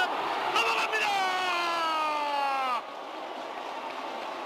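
A male baseball commentator's long, drawn-out shout calling a home run over the right-field wall. It is held for nearly two seconds, sliding slightly down in pitch, over the steady noise of a stadium crowd. The shout breaks off about three seconds in, leaving the crowd noise.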